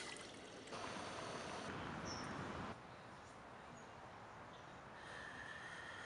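Water poured from a plastic bottle into a Jetboil stove's cooking cup, splashing in for the first three seconds or so, then a faint steady hiss.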